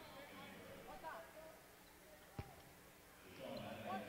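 Faint voices in a quiet basketball arena, swelling a little near the end, with a single sharp knock about two and a half seconds in.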